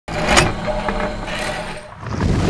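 Logo-animation sound effect for a news channel intro: a whoosh about half a second in over a low steady drone, fading away toward the end.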